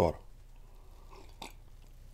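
Quiet room tone at a desk microphone, with a single short, sharp click about one and a half seconds in.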